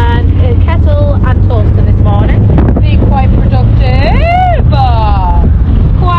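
Steady low road and engine rumble inside a moving car's cabin, with a young child's high voice vocalising without words over it: short calls, then a long rising-and-falling cry about four seconds in and a falling glide just after.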